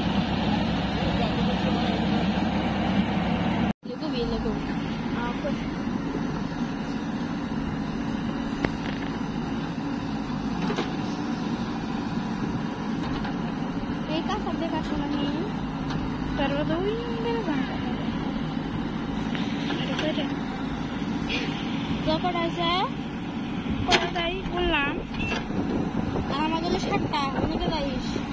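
Diesel engines of a JCB 3DX backhoe loader and a tractor running steadily while the backhoe digs mud. There is a short break in the sound just under four seconds in. Voice-like calls rise and fall over the engine noise, most of them near the end.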